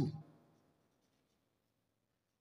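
Faint scratch of a pen writing a word on paper, just after the end of a spoken word.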